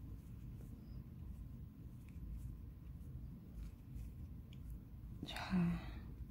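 Faint, scattered soft ticks and rustles of a metal crochet hook pulling yarn through single-crochet stitches, over low room noise. A woman says one short word near the end.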